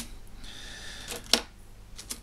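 A single sharp click about a second and a half in, a small hard object tapping on a paper-covered wooden tabletop. Otherwise quiet room tone.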